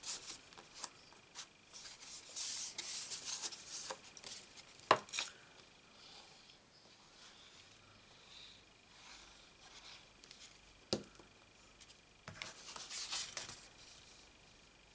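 Paper card and cardstock being handled, slid and rubbed on a craft desk while a card is put together, with two sharp taps about five and eleven seconds in.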